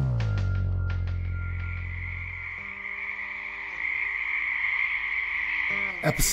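A low sustained music chord fades out over the first couple of seconds. About a second in, a steady high-pitched chorus of calling animals comes up and carries on, with a faint low held tone beneath it.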